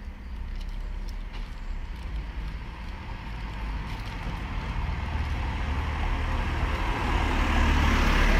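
Road traffic noise picked up outdoors by a phone microphone: a steady low rumble with a hiss over it, growing gradually louder.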